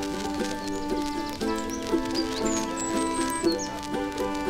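Blues instrumental on a concertina: sustained reed chords with repeated note attacks. Short high chirps sound over the music through the middle.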